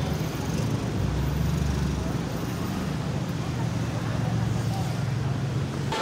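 Street traffic ambience: a steady rumble of road traffic with a low engine hum.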